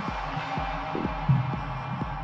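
Stripped-back, muffled section of an electronic house/techno DJ mix: a low kick drum thudding about twice a second under a faint steady held tone, with the high end of the music gone.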